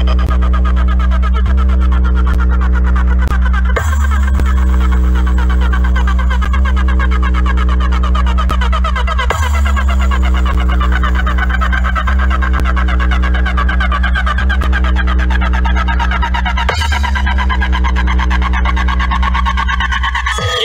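Electronic dance music with a heavy sustained bass line, played loud through a large DJ speaker stack of bass cabinets and horn speakers; the bass note shifts about four, nine and seventeen seconds in.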